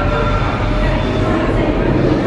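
A steady low rumble with indistinct voices in the background.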